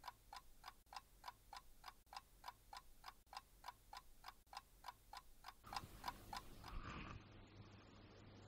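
Faint, rapid clock ticking, about three and a half ticks a second, which stops about six and a half seconds in.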